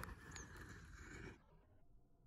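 Near silence: faint outdoor background hiss that drops away almost completely about a second and a half in.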